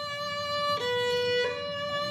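Solo violin playing slow, long-held notes: a sustained note, a lower one from just under a second in, then back up to the first note for the rest.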